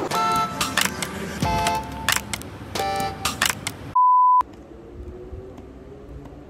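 Electronic tones and sharp percussive hits, like upbeat intro music, for about four seconds. Then a single loud, steady, high beep about half a second long, followed by low room noise.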